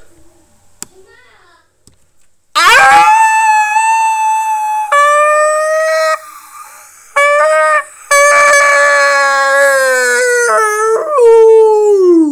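Wolf howling: several long, loud howls, starting about two and a half seconds in, each holding a steady pitch. The pitch steps lower from one howl to the next, and the last one slides down at the end.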